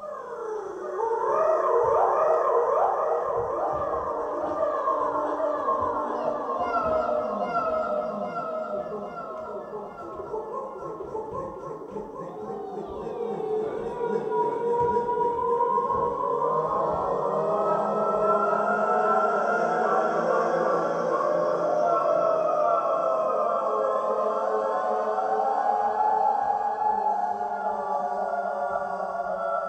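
Electronic sound score of recorded audience sounds, algorithmically altered and played back as many overlapping wavering, gliding tones. It swells about a second in, thins out around ten seconds, then builds again with a rising glide.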